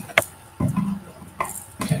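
A single sharp click about a fifth of a second in, then soft voice sounds and a spoken 'okay' near the end.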